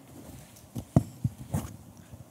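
Handling noise on a handheld microphone: a few soft thumps and knocks within about a second as it is passed from one person's hand to another's.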